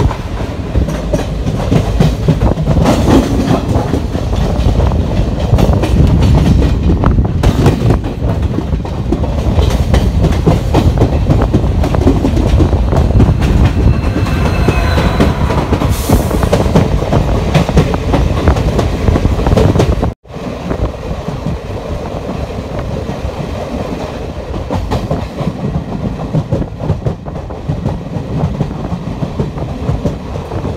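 Passenger train coach running at speed, heard from on board, with wheels clattering over the rail joints. About two-thirds through the sound cuts off abruptly and comes back as quieter running.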